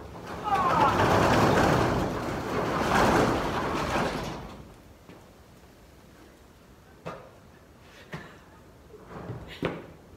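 Corrugated metal roll-up barn door being pushed up by hand: a loud rattling clatter lasting about four seconds, with a brief squeal as it starts to move. A few light clicks and thumps follow near the end.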